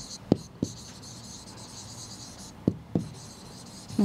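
Chalk scratching on a green chalkboard as words are written, in stretches, with a few short taps of the chalk against the board.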